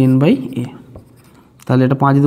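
A man talking, with a marker pen scratching on a whiteboard as he writes. The voice stops briefly about half a second in and comes back near the end; the faint scratching of the marker fills the pause.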